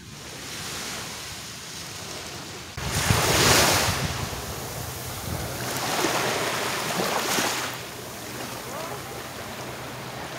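Small ocean waves breaking and washing up a sandy beach, with wind on the microphone. The wash swells twice, about three seconds in and again around six to seven seconds in.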